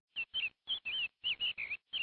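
Bird chirping: a quick run of short, high notes that slide up and down in pitch, about five a second, with dead silence between them.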